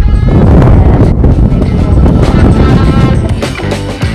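Strong gusting wind buffeting the microphone in a loud low rumble, with background music playing under it. Near the end the wind drops away and the music carries on alone.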